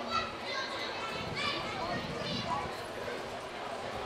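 Raised voices shouting short calls across an open field, several separate shouts over a steady background of outdoor noise.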